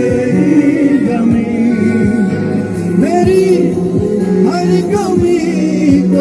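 Live Bollywood song performance: male voices singing into microphones, accompanied by strummed acoustic guitar.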